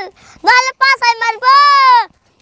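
A child's high-pitched voice calling out in a sing-song way: a few quick syllables, then one long drawn-out note near the end.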